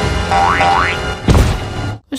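Cartoon soundtrack: background music with two quick rising-pitch sweeps about half a second in and a sudden hit a little past one second, cutting off abruptly at the end.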